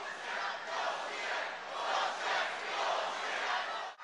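Large crowd shouting and cheering, rising and falling in waves.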